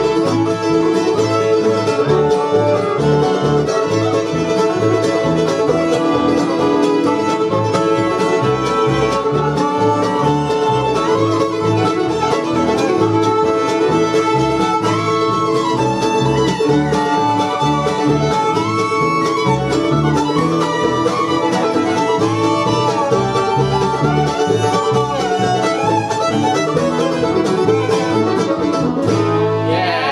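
Bluegrass band playing an instrumental fiddle tune live: two fiddles play the melody together over flatpicked acoustic guitar and an upright bass keeping a steady beat.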